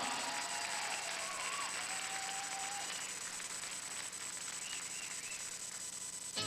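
Audience applauding in a large hall, an even clatter of clapping with a few faint voices calling out over it.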